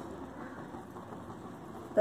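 A steady low hum of background noise, even throughout, with no distinct knocks or clicks.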